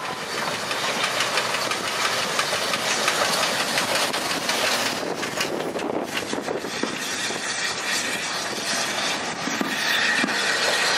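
1908 GWR steam rail motor No. 93 running slowly into the platform and past close by: a steady rumble of the steam railcar on the track, with its wheels clicking over rail joints.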